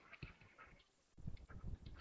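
Faint taps and light scratches of a pen stylus writing on a tablet screen, a few soft clicks that come more often in the second half.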